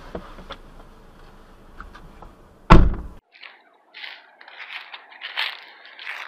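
A car door shutting with a heavy thud just under three seconds in, after a low rumble from the car's cabin. Then come scattered, lighter rustling and scuffing sounds.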